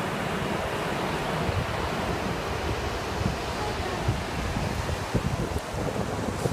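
Ocean surf washing over shallow sand, an even rushing noise, with wind buffeting the microphone in irregular low thumps that grow more frequent in the second half.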